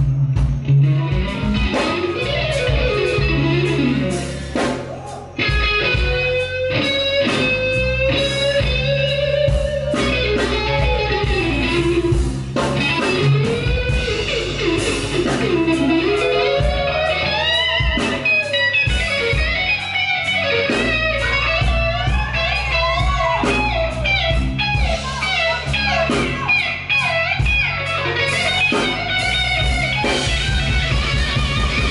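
Live blues-rock band playing: an electric guitar plays a lead line full of bending, gliding notes over bass guitar and drums, with a short drop in volume about five seconds in.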